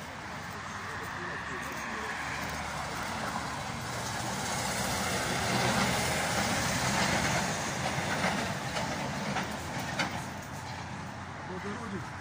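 A heavy motor vehicle passing on the street, its engine and tyre noise swelling to a peak about halfway through and then fading.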